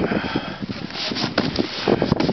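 Wind buffeting the microphone, mixed with a snowboard scraping and shuffling through snow in irregular bursts.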